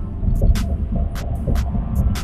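Low, uneven rumble inside a car cabin, with a few faint clicks.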